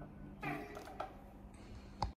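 The last chord of a solid-body electric guitar with light tremolo, pulsing as it dies away. About half a second in there is a brief squeak, and there are sharp clicks about a second in and at the very end.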